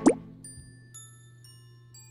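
A quick cartoon pop sound effect that sweeps sharply up in pitch, loud and brief, followed by playful background music: light bell-like notes about every half second over a held low note.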